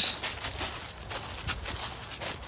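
Footsteps crunching and rustling through dry leaf litter: a run of uneven crackles and scuffs as several people walk.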